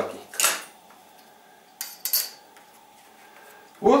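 A utility knife slicing through fabric webbing with a short scrape. About two seconds in come two brief light clicks.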